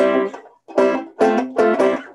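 Six-string banjo cross-picked with a flatpick: a run of bright single notes, a brief break about half a second in, then more quickly picked notes.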